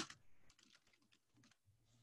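A few faint keystrokes on a computer keyboard in the first half second.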